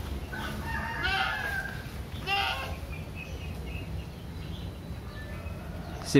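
A rooster crowing: one drawn-out call in the first second and a half, then a shorter call a little after two seconds in.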